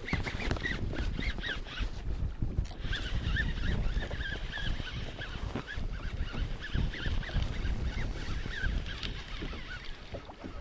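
Fishing reel being wound in against a hooked fish, giving a wavering, reedy whine that steadies from about three seconds in.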